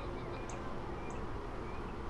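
Honey bees humming steadily on an open hive frame, fairly quiet, with a few faint short high chirps over the top.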